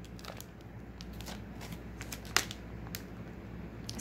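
Clear plastic packaging of wax melts being handled, giving a few faint crackles and clicks, with one sharper crackle a little past halfway.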